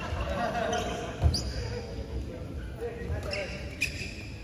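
Badminton doubles play in a sports hall between rallies: indistinct voices, a heavy thud about a second in, a short rising squeak just after it, and a sharp smack near the end.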